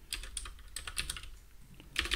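Typing on a computer keyboard: a quick run of keystrokes for about the first second, then a few scattered keys.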